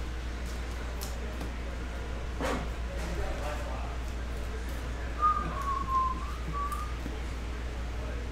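Trading cards being handled and laid on a table, with a few light clicks and one sharper snap about two and a half seconds in. About five seconds in comes a short whistled phrase of a few notes, lasting under two seconds.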